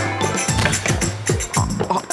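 Background music: an upbeat track with a regular beat of deep drum hits that drop in pitch, and sharp percussion on top.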